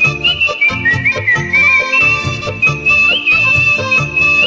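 A man whistling a melody into an earphone microphone, one clear high line that slides between notes, over a karaoke backing track with a steady low beat.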